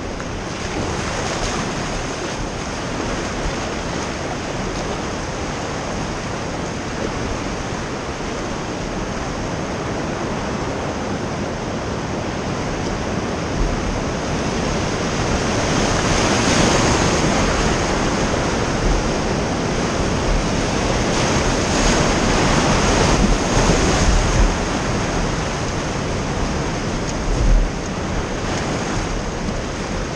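Whitewater rapids rushing around an inflatable oar raft, growing louder in the middle as the raft runs the main waves, with wind buffeting the microphone. There is a brief thump near the end.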